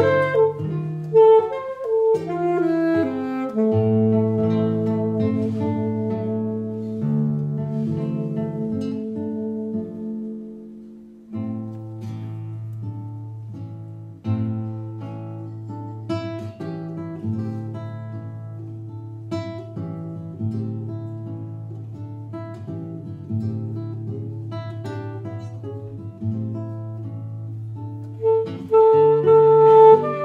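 Alto saxophone and nylon-string classical guitar playing a duet: the saxophone carries a melody of long held notes over the guitar's low bass notes and chords, easing off briefly about ten seconds in and swelling again near the end.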